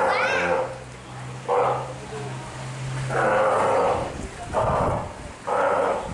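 Adult female Steller sea lion calling: loud, hoarse calls repeated about five times in six seconds, each lasting under a second.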